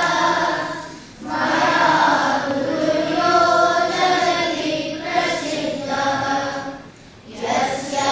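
A group of children chanting Sanskrit slokas in unison, a sing-song recitation held on sustained notes. It breaks off briefly for breath about a second in and again near the end.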